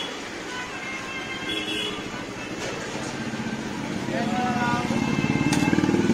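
Jalebi batter frying in hot desi ghee in a wide iron karahi, a steady sizzle under street noise. About four seconds in, a motor engine's low pulsing hum grows louder over it.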